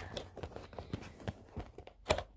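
Cardboard bobblehead box being handled and opened by hand: a string of irregular clicks and taps.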